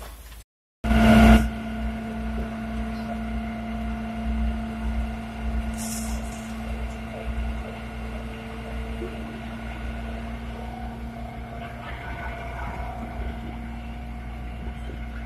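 A fire truck's engine running steadily: an unchanging drone with a low rumble under it. It starts with a short dropout and a loud jolt about a second in, and there is a brief hiss around the middle.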